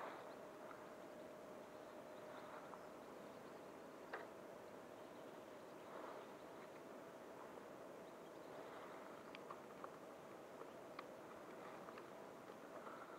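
Near silence: faint outdoor room tone with a faint steady whine and a few light clicks, one about four seconds in and a couple more near the end.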